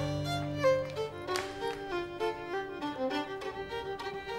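Instrumental background score: a slow melody moving from one held note to the next, over a low held note for about the first second.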